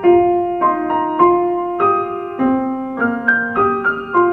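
Solo piano playing a song accompaniment at a moderate, even tempo, a new note or chord struck about every half second over a sustained lower line.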